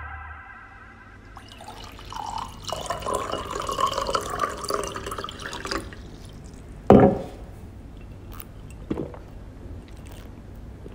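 Water poured into a small glass vase for about four seconds, then a single sharp knock about seven seconds in and a lighter knock near the end.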